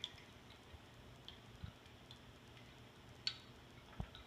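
Faint, scattered clicks and ticks of hanging braiding bobbins knocking together as strands are passed across a flat braid loom, the loudest click about three seconds in.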